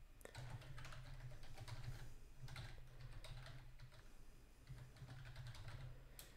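Faint, quick run of keystrokes on a computer keyboard.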